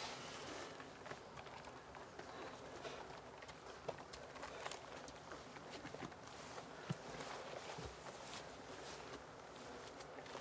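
Faint outdoor woodland ambience with occasional soft rustles and a few small clicks, as of people shifting and stepping in undergrowth.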